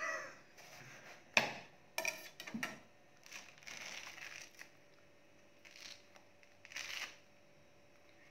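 Thick, pithy pomelo rind being pulled and torn apart by hand: a sharp snap about a second and a half in, then several shorter rips and stretches of rustling, with quiet gaps between.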